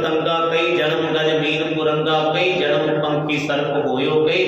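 A man chanting a Sikh hymn line (shabad) in a drawn-out melodic voice, over a steady low drone.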